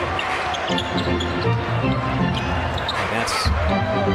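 Basketball dribbled on a hardwood court, with arena music playing underneath.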